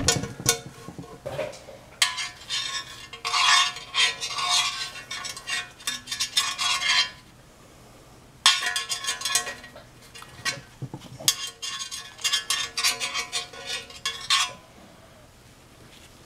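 A thin metal tool scraping and clinking against the inside of a removed cast oil pan, the pan ringing faintly, in two spells with a short pause between, as the bottom of the sump is probed for debris.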